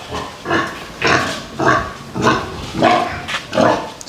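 Domestic pigs grunting, about six short calls roughly half a second apart.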